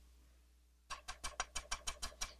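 Slotted metal spatula clicking against a stone griddle as it scoops up cooked shrimp. The clicks come in a quick run of about eight, some six a second, starting about a second in.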